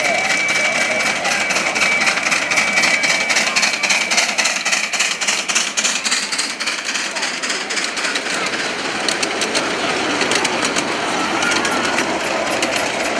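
Miniature ride-on train, a model steam locomotive hauling passenger cars, running on its small-gauge track: a fast, steady run of clicks from the wheels on the rails, densest in the middle, with people's voices around it.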